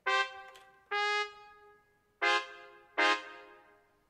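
Sampled trumpet notes from MuseScore's playback sound as notes are entered to build a chord in the trumpet section. There are four short notes, each starting sharply and fading within about a second, and the last two sound fuller.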